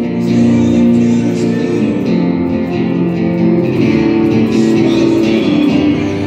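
Acoustic guitar strumming chords steadily.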